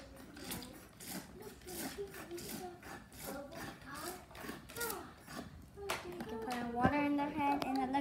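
Clicks and taps of plastic toy parts being handled in a toy bathtub, under a child's quiet murmuring voice. Near the end, a steady pitched sound that changes pitch in a few steps.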